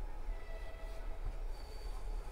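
Passenger train wheels squealing thinly on the rails as the train rolls slowly through a station, brief high-pitched squeals over a low rumble, heard from inside a coach.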